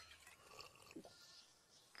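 Near silence from the cartoon's soundtrack, with one faint, brief voice-like sound about a second in.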